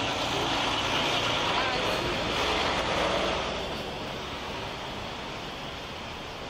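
Road traffic noise, a vehicle going by: a rushing sound, loudest over the first three seconds or so, that eases to a quieter steady background about halfway through.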